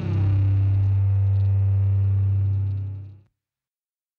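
The closing held low note of a heavy rock song, ringing steadily and then fading out about three seconds in, leaving silence.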